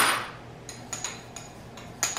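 A spoon knocking and clinking against a small bowl while cinnamon sugar is stirred: one louder knock at the start that rings briefly, then a few light ticks.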